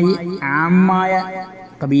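A man's voice speaking with long vowels held at a steady pitch, in drawn-out phrases with a short break about a third of a second in and another just before the end.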